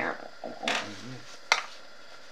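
Brief handling noises: a short rustle, then a single sharp click of a small object being handled or set down.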